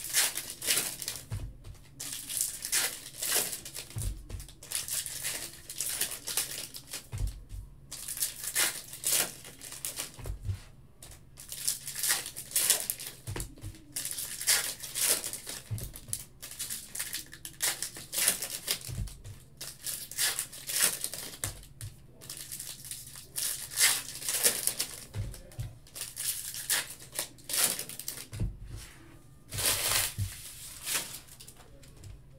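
Foil trading-card pack wrappers crinkling and tearing as packs are ripped open and handled, in repeated bursts of crackling. Soft knocks come every few seconds.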